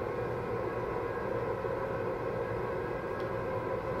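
Steady low background hum of room noise, with no speech and no distinct events.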